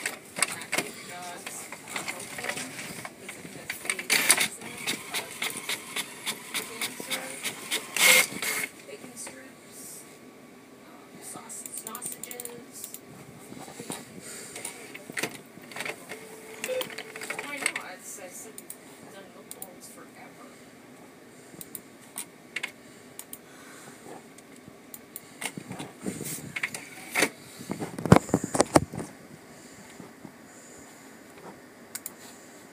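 HP all-in-one inkjet printer running: its paper feed and print carriage whirring and clicking in uneven runs, busiest in the first nine seconds and again near the end.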